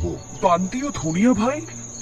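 Steady high-pitched cricket chirring of a night ambience track, with a voice speaking over it for about a second in the middle.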